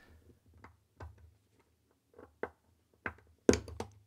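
Small metal clicks and taps from a fork-ended spring bar tool working against a watch's lug and the end link of its stainless steel bracelet, prying the spring bar free. Faint scattered clicks build to a quick cluster of sharper clicks near the end as the spring bar releases.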